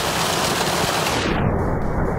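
Water gushing from a water truck's fill hose and splashing into a swimming pool, a loud steady rushing and crackling. About one and a half seconds in, the high end drops away and it turns to a duller rumble.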